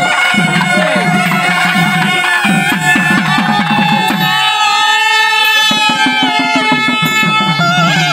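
A South Indian traditional wedding-style band playing: saxophones and long reed pipes carry a sustained, ornamented melody over fast rhythm on barrel drums. About halfway through the drums stop briefly while the wind instruments hold a long note, then the drumming resumes.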